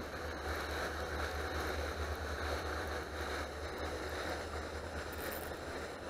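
Steady rushing noise of pond fountains spraying, with wind rumbling on the microphone.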